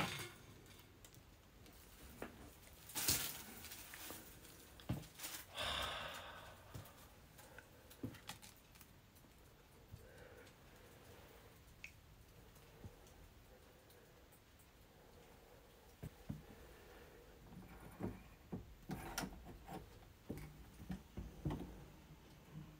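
Faint handling and movement noises in a small room: scattered clicks, knocks and rustles of someone moving among cluttered belongings, with a denser run of clicks and knocks near the end.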